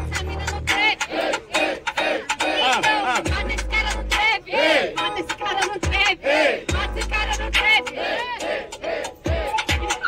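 Hip-hop beat playing loudly over loudspeakers, with a deep bass note about every three and a half seconds and sliding pitched sounds over it; a crowd shouts along.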